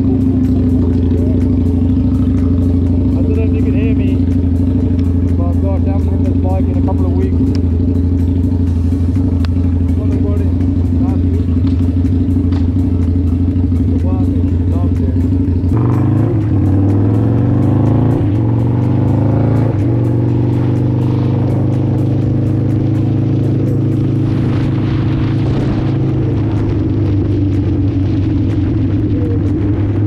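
Motorcycle engine idling steadily just after a cold start. About halfway through its pitch changes as it revs and pulls away, and it then runs on the move with added wind hiss.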